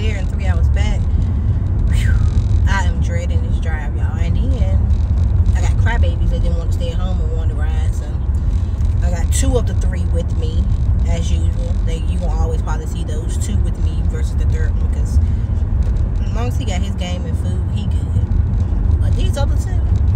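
A woman talking over the steady low rumble of a car, heard from inside the cabin.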